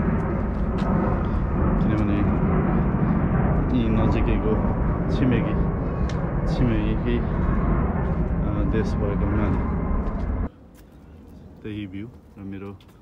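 Wind rushing over the microphone outdoors, with voices talking faintly under it. The rush cuts off suddenly about ten seconds in, and a voice follows.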